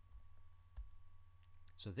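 A single faint tap of a stylus on a tablet screen about a second in, against a steady low electrical hum, with a man's voice starting near the end.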